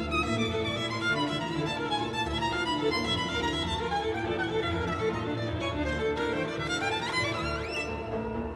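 Solo violin playing over an orchestral accompaniment, in a violin concerto. Near the end the violin climbs steeply to a high note.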